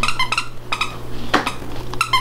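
A few light, metallic-sounding clinks and knocks, the sharpest about one and a half seconds in, over a steady low hum.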